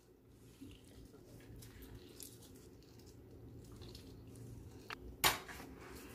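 Faint squishing and small ticks of a hand-held lemon squeezer pressing a lemon over fish in a bowl, over a low steady hum, with one louder short handling noise about five seconds in.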